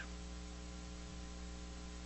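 Faint, steady electrical mains hum with a light hiss.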